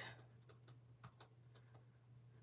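Faint scratching and tapping of a pen writing a word on a paper sticky note: a handful of short, irregular ticks over a low steady hum.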